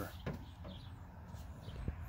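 Faint bird chirps at intervals over low outdoor rumble, with a single light tap near the end.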